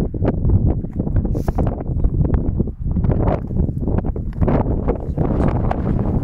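Strong wind buffeting the microphone: a loud, uneven rumble that gusts on and off.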